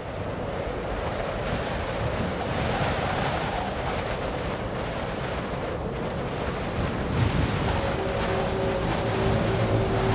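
Steady rushing wind noise that fades in from silence, with a few faint held tones coming in near the end.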